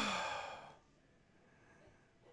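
A man sighs once into a close microphone, a breathy exhale that fades out within about a second. Faint room tone follows.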